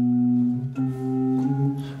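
Small chamber organ with wooden pipes played in held notes, a low note with a higher one above it. The pitch changes twice, about two-thirds of a second in and again near the end, then the sound stops.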